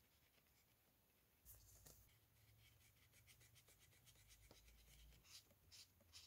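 Faint scratching of a pen tip on paper in quick repeated strokes, starting about a second and a half in.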